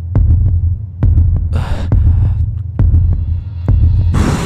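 Dark suspense background music: a low, heartbeat-like throbbing bass pulse about once a second, with faint ticks and a brief hissing swell near the middle.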